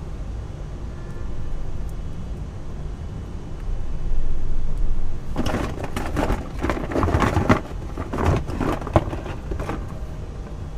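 Rough scraping and rustling of painting materials being handled, starting about halfway through as a run of scrapes with a couple of sharp clicks. A steady low rumble runs underneath.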